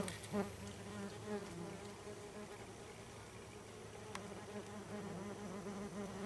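Yellow jacket workers buzzing around their paper nest, a faint drone that wavers in pitch. The wasps are stirred up and coming out to sting.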